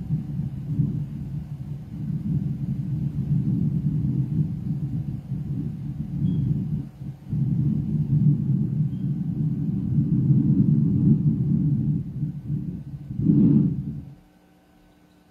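Low, muffled rumble picked up close on a handheld microphone, breaking off briefly about seven seconds in, with a louder burst shortly before the end.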